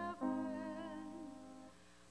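A woman soloist singing slow, long-held notes with vibrato over piano accompaniment; the second note fades away near the end.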